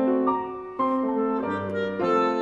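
Live classical instrumental music: a melody of held notes that change about every half second, with a short dip in loudness about halfway through before the next note comes in.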